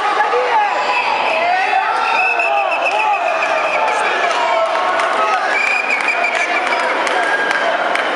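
Many voices of a crowd of karate coaches and spectators shouting and calling over one another, some calls drawn out. A few sharp knocks are scattered through it.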